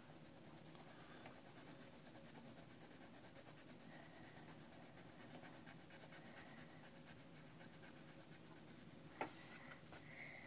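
Faint, steady scratching of a coloured pencil shading on paper, with one sharp tap about nine seconds in.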